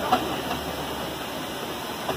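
Steam road roller running, with a steady hiss of steam and one sharp knock just after the start.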